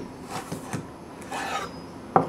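Chef's knife slicing lengthwise through a halved carrot on a wooden cutting board: a few short, soft scraping cuts.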